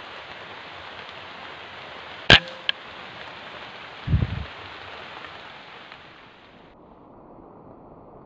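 An air rifle fires a single shot a little over two seconds in: one sharp crack, the loudest sound here, followed by a fainter click. About two seconds later comes a short low thump, over a steady hiss that drops away suddenly near the end.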